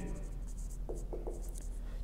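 Whiteboard marker writing on a whiteboard: a run of short, faint strokes as a word is written out.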